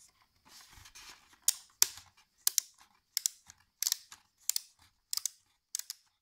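The ratcheting rear fit-adjustment dial of a bicycle helmet being turned by hand, clicking step by step. A brief rustle comes first, then a run of sharp clicks, often in quick pairs, about two-thirds of a second apart.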